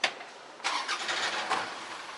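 A sharp click, then about a second of noisy engine sound from a motor vehicle, ending in a second click and a lower steady hum of traffic.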